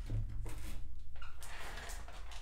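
Trading cards and packs being handled on a tabletop: a soft low thump at the start, then a few light taps and rubs, over a steady low hum.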